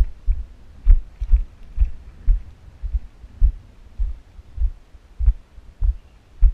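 Footsteps of a hiker walking on sandstone and grit, heard as low, dull thuds about twice a second in a steady walking rhythm, with a faint crunch on some steps.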